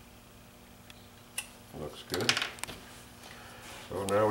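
Hand tools handled on a tabletop: a pencil set down and a carving knife picked up. A sharp click about a second and a half in, then a short cluster of knocks and rustling around two seconds, over faint room hum.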